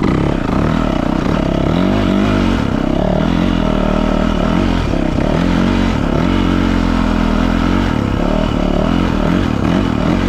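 A 2019 Yamaha YZ450FX's 450 cc single-cylinder four-stroke engine running under load as the dirt bike picks up speed, its pitch rising and falling repeatedly with throttle and gear changes.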